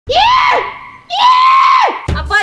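Two long, high-pitched yells from a person's voice, each rising, held and then dropping away; the second, starting about a second in, is the longer.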